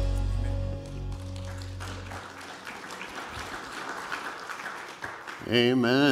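A worship band's final sustained chord fades out over the first two seconds. The congregation then applauds, and a man begins speaking near the end.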